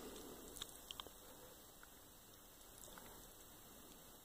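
Near silence: room tone, with a few faint small clicks in the first second or so.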